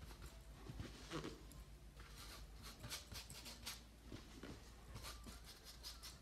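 Faint paintbrush strokes on canvas: the bristles scrub and dab over wet paint in soft, irregular scratchy swishes, a few each second.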